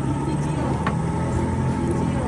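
Boat engine running steadily with a low, even drone, and a single brief click about a second in.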